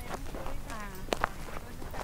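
Voices talking in the background with footsteps on dry ground, and two sharp clicks in quick succession a little past the middle.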